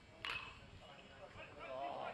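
A metal baseball bat hitting a pitched ball about a quarter second in: one sharp crack with a short ringing ping. Faint crowd voices follow.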